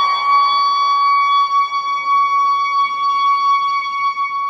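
Soprano saxophone holding one long, steady high note in a large stone church.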